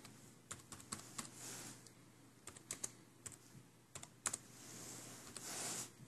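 Laptop keyboard being typed on: irregular sharp key clicks in short runs, with a soft hiss for about a second near the end.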